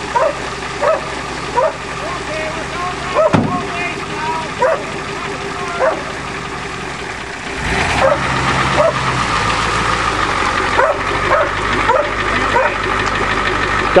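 A dog barking over and over, about once a second, above a vehicle engine that keeps running and grows louder about eight seconds in.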